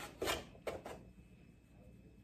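Eggshells clicking and rubbing against each other and the glass jar as eggs are set in by hand: three light, short sounds in the first second.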